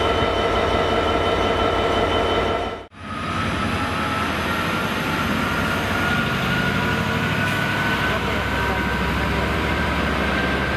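Steady train drone with several held tones, cutting out abruptly about three seconds in. Then a GB Railfreight Class 66 diesel locomotive passing close by, its EMD two-stroke V12 engine running with a low rumble and a whine slowly rising in pitch.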